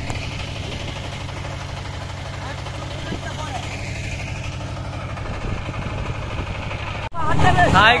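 A small river boat's engine running steadily, a low even hum with a fast regular pulse.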